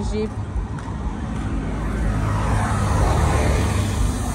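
Road traffic noise: a low rumble throughout, with a passing vehicle swelling louder over the last couple of seconds.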